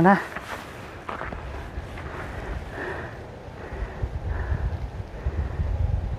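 Wind noise on the microphone: an uneven low rumble that becomes stronger and gustier about four seconds in. A voice ends just as it begins.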